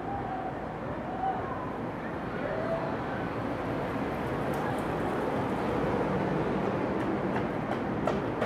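Steady rumble of passing vehicle noise that grows a little louder about halfway through, with a few faint short tones in the first few seconds.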